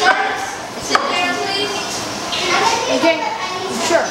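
Children's voices talking and chattering, with one sharp click about a second in.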